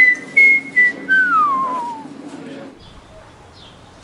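A person whistling a short tune: a few held notes, then one long slide downward in pitch that fades out about two seconds in. Soft, regular taps run underneath.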